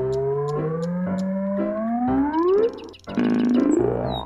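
Cartoon sound effect: a synthesizer-like tone slides slowly upward in pitch for nearly three seconds. A second, quicker upward slide follows near the end. Both play over light background music with a soft, regular ticking beat.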